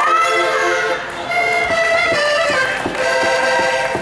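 Portuguese button accordion (concertina) playing a steady desgarrada melody between the sung verses.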